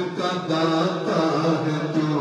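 Male voice singing an Urdu naat in a slow, chant-like melody, holding long drawn-out notes.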